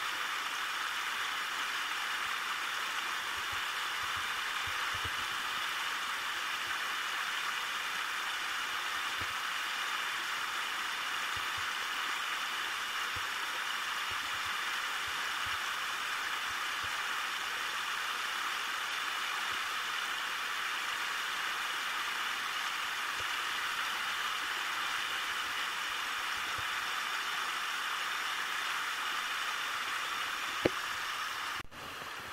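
Steady rushing of river water running through a small riffle.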